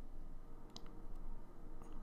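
A few light, sharp clicks, spaced irregularly, over a low steady hum of room noise.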